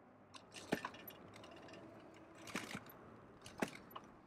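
Faint rattling and clinking from an electric bike jolting over bumps, with a few sharp knocks: about a second in, a couple together past the middle, and one near the end.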